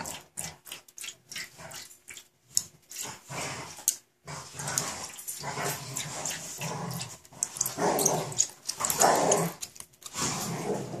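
Pet dogs growling and barking, very noisy, in irregular bursts that come thickest in the second half.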